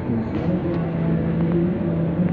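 Diesel engine of a large semi truck running with a steady low hum.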